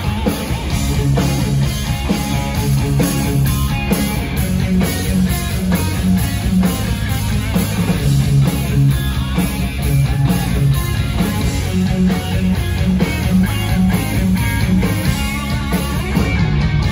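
Live hard rock band playing an instrumental song intro: electric guitars played through amplifiers over drums, with a steady beat.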